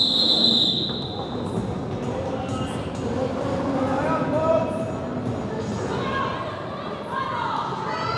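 Roller derby referee's whistle: one long, steady blast that stops about a second in. After it the sports hall is full of murmuring voices, with occasional thuds on the wooden floor.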